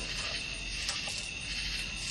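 Steady background hiss with a thin high steady tone running through it, and one small click a little under a second in.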